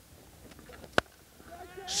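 Cricket bat striking the ball: a single sharp crack about halfway through, over quiet ground noise. A man's voice begins an excited call near the end.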